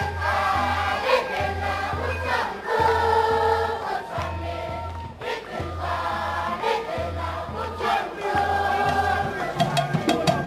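A large group of children singing together in chorus, with hand-clapping and a low note repeating about once a second underneath.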